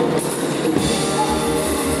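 Live jazz ensemble playing a dense passage, with horns, double bass and hand drums sounding together.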